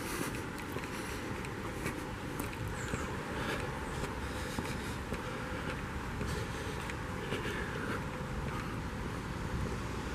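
Footsteps on a paved path over a steady hum of outdoor background noise.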